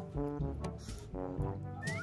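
Cute background music with a steady, bouncy beat and repeating melodic notes. Near the end, a couple of quick rising whistle-like glides.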